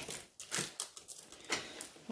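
Small cardboard box being handled, with a few short rustles and scrapes of card sliding against card.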